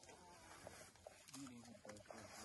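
Faint outdoor field audio fading in, with short, indistinct vocal sounds and a few soft clicks.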